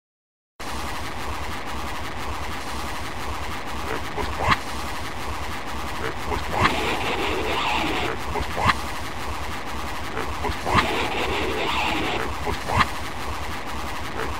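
Noisy opening of a black metal album: a steady low rumble and hiss, with a short sharp rising sound about every two seconds.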